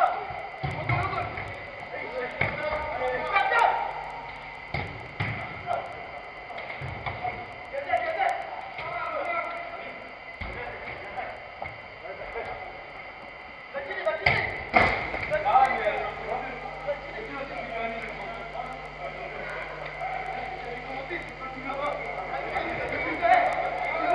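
Players' indistinct calls and shouts over an indoor small-sided football match, with dull thuds of the ball being kicked. A pair of louder knocks comes about fourteen seconds in.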